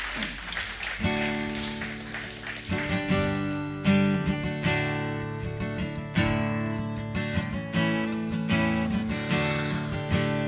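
Acoustic guitars strumming chords as the intro to a worship song, starting about a second in. Before they begin, the last of a round of applause dies away.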